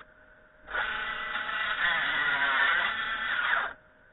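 Table saw cutting through wood on a crosscut sled, a loud run of about three seconds with the pitch dipping under load, stopping suddenly near the end.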